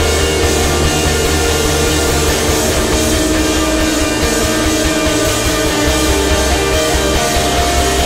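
Screamo band recording in an instrumental passage with no vocals: loud, dense electric guitars over a heavy low end.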